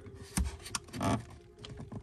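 Plastic lower dash trim panel of a C6 Corvette being handled and pulled at its push-in retaining clips, giving two short clicks and some light scraping.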